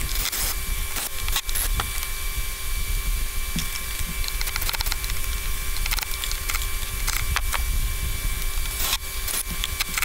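Cordless jobsite fan running steadily, with scattered clicks and knocks from a cordless drill-driver working the trolling-motor mount's Phillips-head screws. The screws are spinning freely in place rather than backing out.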